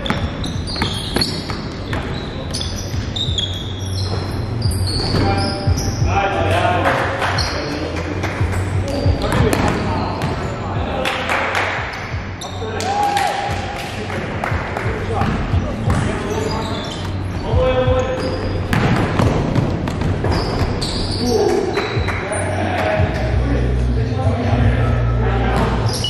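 Indoor basketball game sound: a ball bouncing on the gym floor with many sharp knocks, and players' voices calling out, all echoing in a large hall. Music with a steady bass line runs underneath.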